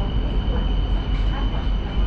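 A BTS Skytrain carriage running into a station, heard from inside: a steady low rumble with a steady high whine.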